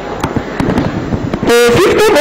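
Handheld microphone handling noise over a PA: a crackly rustle with scattered sharp pops and clicks as the mic is lifted. About one and a half seconds in, a woman's voice starts loudly through the microphone.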